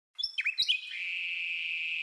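A few quick, falling bird-like chirps with light clicks, then a steady high-pitched tone that holds for about a second.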